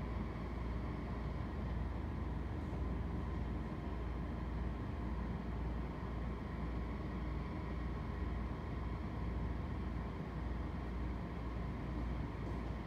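Steady room noise with no speech: a low hum with a faint hiss above it, even throughout.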